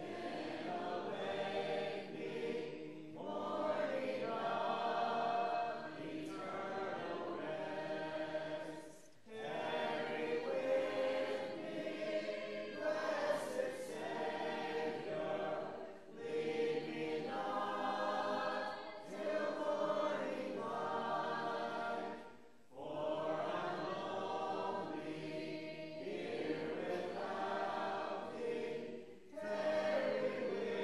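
Congregation singing a hymn unaccompanied, many voices together, in phrases of about six or seven seconds with short breath pauses between them.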